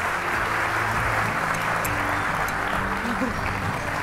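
An audience applauding steadily, with music playing underneath.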